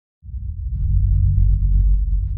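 A deep, low drone from an animated logo's intro sound design starts a moment in and holds steady. Faint crackling ticks sit above it.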